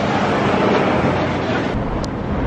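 Steady rush of street traffic noise, with no distinct horn or engine note standing out.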